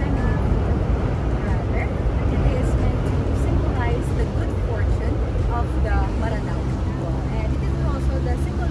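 Indistinct voices of people nearby, no clear words, over a steady low rumble.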